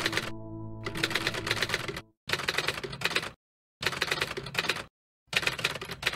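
Typewriter-style typing sound effect: rapid key clicks in bursts of about a second with short silent gaps between them, keeping pace with text being typed out on screen. Under the first two seconds runs a steady ambient synth drone, which then drops out.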